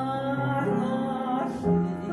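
A woman singing with upright piano accompaniment: she holds one long note for about a second and a half, then stops while the piano carries on.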